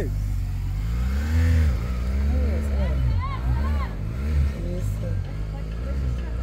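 BMW R 1200 GS flat-twin engine revving hard as the heavy adventure motorcycle accelerates up a steep dirt climb, its pitch rising and falling with the throttle. A shout of "Ei!" at the very start and more voices calling out around the middle.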